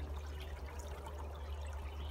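Spring water trickling steadily through a stone foundation, with a low steady rumble underneath.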